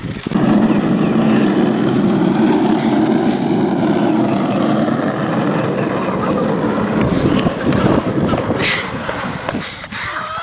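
A cardboard box with a person inside moving fast over an asphalt street, giving a loud, steady rumble from its bottom running on the road surface. It starts abruptly and eases off after about seven seconds.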